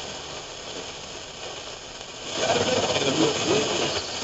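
GE Superadio AM receiver playing static and hiss through its speaker while tuned to a weak, distant AM station. A bit past halfway the noise swells and a faint station comes up under it, buried in the static.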